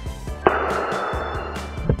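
Background music with a steady beat. About half a second in, a sudden scratchy noise cuts in and runs for about a second and a half, ending with a short click.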